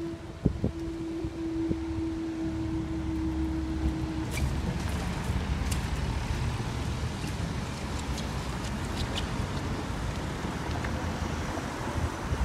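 Level crossing barriers rising, with a steady tone from the crossing equipment that stops about four seconds in. Then road traffic pulls away across the crossing: car engines and tyres, with wind on the microphone.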